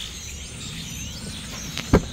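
Outdoor background with faint bird chirps, then near the end one sharp click as the 2011 Mercedes-Benz S550's front door handle is pulled and the door latch releases.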